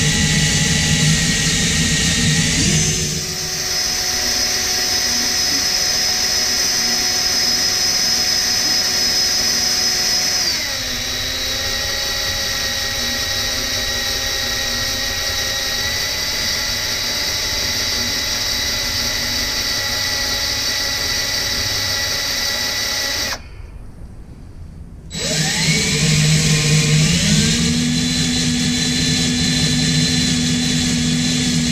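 Cordless drill driving a combination 1/4-20 drill-tap bit into the Jeep's steel frame rail, its motor whine shifting in pitch a couple of times as the load changes. Late on it stops for under two seconds, then spins back up with a rising whine.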